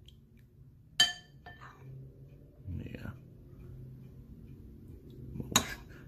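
A ceramic spoon clinking against a ceramic soup bowl while stirring, one ringing clink about a second in and another near the end, over a low steady hum.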